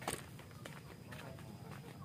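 Faint footsteps of a person walking on a dirt path, with one sharper knock right at the start.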